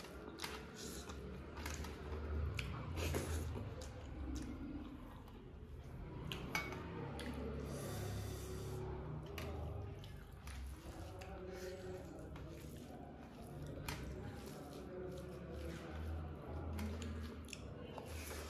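Eating by hand: fingers squishing and mixing rice and curry on a stainless steel tray, with many small scattered clicks and chewing. A short hiss comes about eight seconds in.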